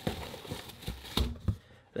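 Cardboard box and plastic wrapping rustling and scraping as a plastic-wrapped keyboard case is slid out of its box, with a few light knocks around the middle.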